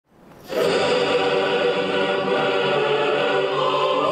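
A choir singing held notes, starting about half a second in.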